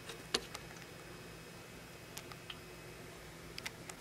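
Faint steady room tone with a few light, sharp clicks, the loudest about a third of a second in and a few more near the end.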